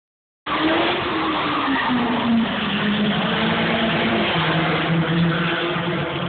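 A car engine running, its note sliding steadily lower for about four seconds and then holding level, over a rushing noise. The sound starts abruptly about half a second in.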